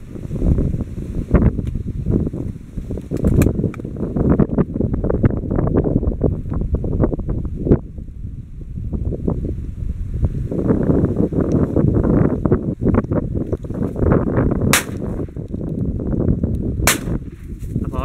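Wind buffeting the microphone throughout, with two shotgun shots about two seconds apart near the end.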